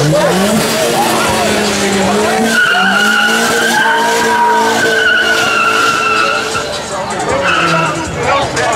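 A car's engine revving up, then its tyres squealing steadily for about four seconds in a burnout, over a shouting crowd.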